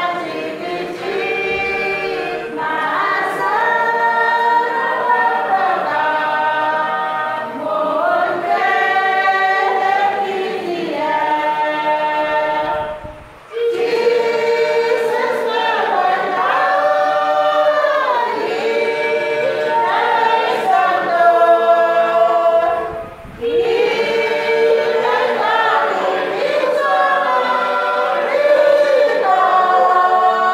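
A group of voices singing a hymn unaccompanied, in several parts, with long held notes. The singing breaks off briefly twice, about 13 and 23 seconds in, between phrases.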